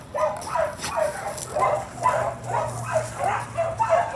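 A dog yipping and whining in short, high calls, about two or three a second, with a low steady hum joining in about halfway through.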